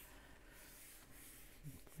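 Faint rustle of a paper page in a colouring book being turned by hand, brushing over the pages beneath, most audible in the first second against near silence.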